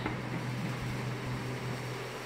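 Steady background room noise: a low, even hum with a soft hiss, and no distinct events.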